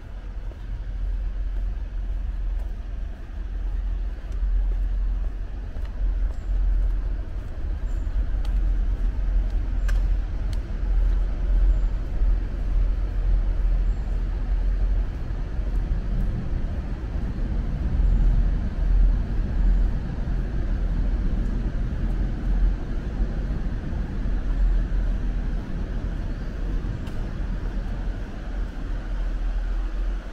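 Continuous low rumble of city road traffic. It swells for a few seconds past the middle.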